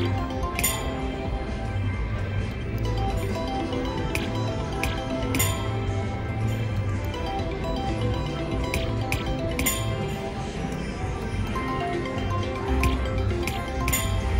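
Casino floor sound of a three-reel slot machine being played: steady background music and chimes, with a sharp click about every four to five seconds as the reels are spun, three spins in all.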